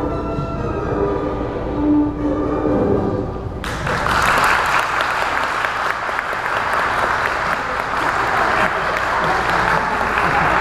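Orchestral music comes to its close, then audience applause breaks out suddenly about three and a half seconds in and carries on.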